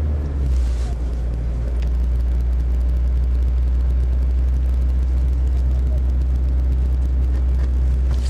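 A rally car's engine idling steadily while the car waits at a stage start, heard from inside the cabin as a loud, even low hum.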